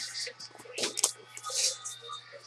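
Background music, with irregular crisp rustles and clicks over it.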